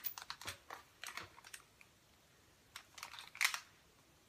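Faint, scattered light clicks and rustles from handling a one-inch Hot Tools spring-clamp curling iron as hair is wound onto its barrel, the loudest click about three and a half seconds in.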